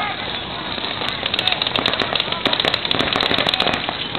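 Paintball markers firing rapidly during a tournament game: a dense crackle of many quick shots that starts about a second in and stops shortly before the end.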